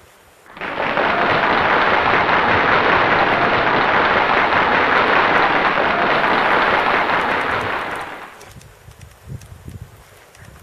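Steady, loud rushing hiss of a gas burner torch playing on a pile of dry berry vines to set it alight. It starts abruptly about half a second in and dies away after about eight seconds.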